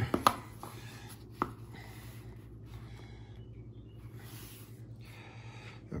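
Handling of a clear plastic card stand and toploader as a card is set up on display: a sharp plastic click about a quarter second in and another about a second and a half in, then faint rubbing.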